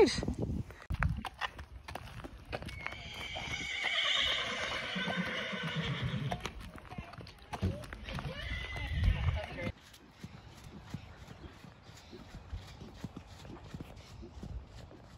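A horse whinnying: a long, wavering call of several seconds, with a shorter call soon after. After a sudden drop in level, faint regular hoofbeats follow.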